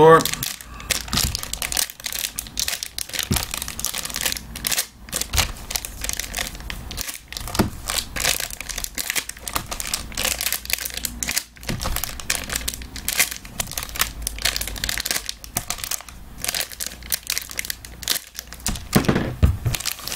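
Foil trading-card pack wrappers crinkling and rustling as they are handled and slit open with a knife: a dense, irregular run of crackles and tearing sounds.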